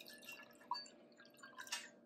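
The last of the water trickling and dripping from an upturned glass bottle into a drinking glass, faintly, with a couple of separate drips standing out.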